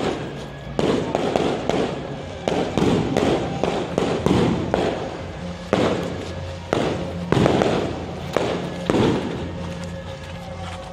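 Firecrackers going off in about ten sharp bursts at irregular intervals, each crack trailing off in crackle.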